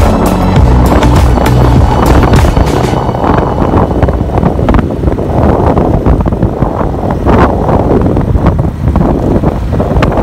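Background music that stops about three seconds in, giving way to wind rushing over the microphone and the rumble of a motorcycle riding on a rough road.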